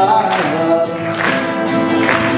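Live music: a large ensemble of acoustic guitars strumming chords together under singing voices.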